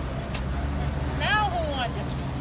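Steady low rumble of city street traffic, with a short high-pitched voice a little over a second in.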